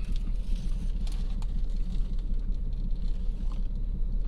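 Steady low rumble of a vehicle heard inside a parked car's cabin, with faint scattered clicks from a man chewing a toasted bagel.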